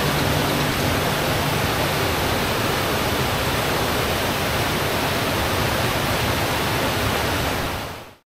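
Waterfall on a mountain creek: a steady rush of water pouring over rock ledges into a pool, fading out near the end.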